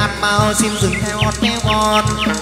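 Vietnamese chầu văn ritual music: an instrumental passage with a steady drum beat and plucked moon lute. Short high chirps like birdsong run over it.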